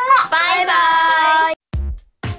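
A high child's voice sings a gliding, then held note over music; it cuts off suddenly about one and a half seconds in, followed by a short low thump.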